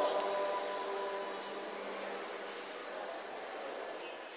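The end of a chanted male voice dying away in the echo of a large domed stone hall, its held notes fading out about a second and a half in. After that there is a steady hiss of room sound with faint high chirps.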